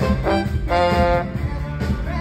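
Live Motown band with a brass horn section, trombone close by, playing a short note and then a held note of about half a second over bass and drums.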